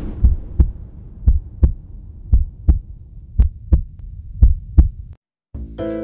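Heartbeat sound effect: five deep double thumps, about one a second, stopping about five seconds in. Music starts just before the end.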